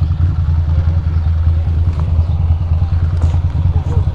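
Ducati Monster 620's air-cooled V-twin engine idling and lugging at walking pace while the bike is eased into a parking spot, a steady low pulsing throb.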